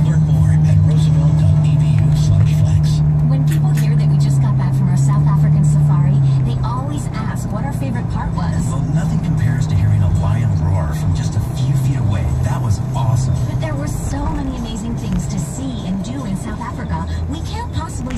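Car radio playing a voice with music, heard inside a moving car over the engine and road noise.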